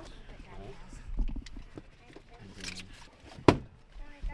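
Handling knocks and rustles from people climbing into and settling in a small plane's cabin, with a dull thump a little over a second in and one sharp knock about three and a half seconds in, the loudest.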